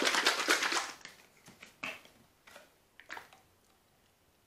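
Plastic squeeze bottles of acrylic paint being handled on a table: a brief clatter in the first second, then a few light, separate knocks.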